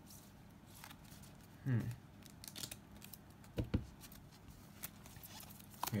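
Sleeved trading cards being picked up and laid down on a playmat: soft plastic rustles and light taps, with a louder knock a little over halfway through.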